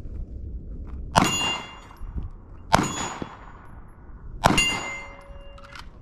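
Three gunshots about a second and a half apart, each followed by the ringing of a struck steel target that fades over about a second.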